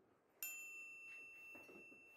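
A single bell-like chime sound effect: struck about half a second in, it rings with a clear, steady tone that slowly fades over about two seconds. A few faint small knocks sound under it.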